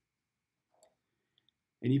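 A pause in a man's speech, near silent apart from a few faint clicks: one a little under a second in and two small ticks soon after. Then his voice starts again near the end.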